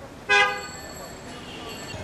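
A vehicle horn gives one short toot about a third of a second in, over the low hum of street noise.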